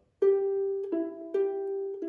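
Ukulele picked one note at a time, alternating between a G on the third fret and the E fretted at the fourth fret of the C string above it, in a rhythmic pattern. About four plucked notes ring out, higher then lower then higher, each sustaining until the next.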